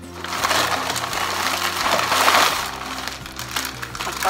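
Plastic shopping bag and plastic packaging rustling and crinkling as a packet of braiding hair is pulled out, loudest a little past the middle, over steady background music.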